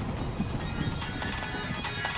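Quiet opening of a rap track between songs in a mix: a faint, irregular clattering texture over low noise, much softer than the music before it.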